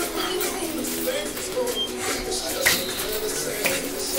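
Indistinct chatter of onlookers in a boxing gym, with a few short squeaks and two sharp smacks of boxing gloves landing during sparring, the louder one shortly before the end.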